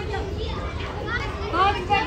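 Schoolchildren chattering and calling out, many high voices overlapping, with a louder call near the end.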